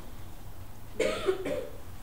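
A single cough about a second in, with a sudden harsh onset and a short voiced tail.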